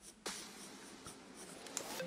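Pen tip scratching across paper as a curved line is drawn and thickened, with a short stroke about a quarter second in and a longer stroke near the end.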